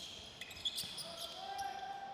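A basketball bouncing on a hardwood court in a large indoor arena, heard faintly amid scattered knocks and short high squeaks of play.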